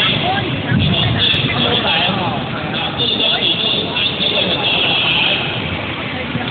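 Indistinct chatter of many people, echoing in a large gymnasium hall over a steady background noise.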